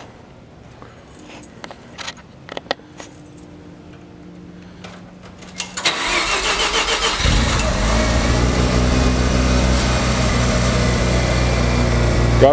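Clicks, then about six seconds in the starter cranks the Mazda RX-7 FD's 13B twin-rotor rotary engine. It catches about a second later and settles into a steady, loud idle. The idle carries a misfire typical of a rotary that has sat unused for a month.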